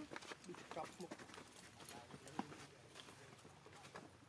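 Faint scattered clicks with a few brief, squeaky pitched calls from a group of macaques, including a nursing infant.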